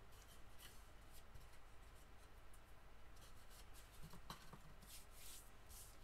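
Near silence with faint rustling and rubbing of folded cardstock being handled and pressed flat, and a light tap about four seconds in.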